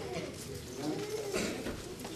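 Faint, distant talking from voices away from the microphone, with a few soft clicks.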